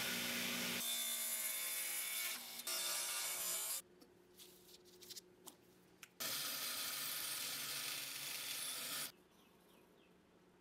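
Table saw cutting a hardwood handle block: a cut lasting about four seconds, a pause, then a second cut of about three seconds that stops sharply.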